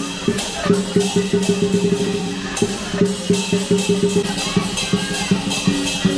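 Chinese dragon dance percussion: a drum beaten in a fast, steady rhythm of about five strokes a second, with cymbals crashing and a low ringing tone underneath.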